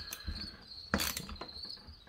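A few light clicks and knocks of metal chainsaw engine parts being handled as the crankcase half is fitted onto the cylinder, the sharpest about a second in, over a steady high-pitched whine.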